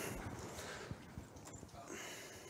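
Faint footsteps and a few soft knocks as a person walks across a room, over low room hiss.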